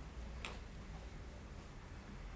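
A porcelain candlestick gives a single light click as it is handled, over a low steady hum.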